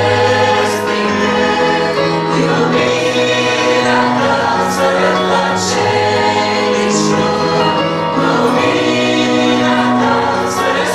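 Mixed choir of young women and men singing a Romanian-language Pentecostal hymn, with long held notes.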